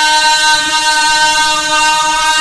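A male Quran reciter holding one long, steady note, a drawn-out vowel of the chanted recitation.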